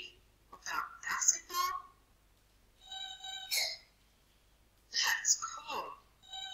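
Cartoon dialogue in a boy's voice, broken about three seconds in by a short electronic beep from the robot character, a single held tone with several overtones.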